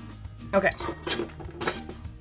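A few light, sharp clacks, about half a second apart, of pens and small hard desk items knocking together as they are handled.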